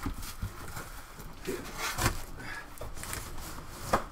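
Cardboard box being handled and slid apart: irregular scrapes, rustles and light knocks of cardboard.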